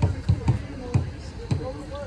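Dull low thumps of footsteps on a paved path, about two a second, picked up through a handheld phone while walking, growing weaker after the first second. Faint voices of people nearby come in near the end.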